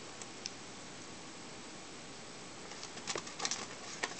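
Faint room hiss with a couple of light ticks, then a short cluster of clicks and rustles about three seconds in as a small bulb and a battery are handled on crumpled aluminum foil.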